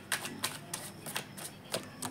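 A deck of tarot cards being shuffled and handled by hand: a run of light, irregular clicks and snaps as the cards slip against each other.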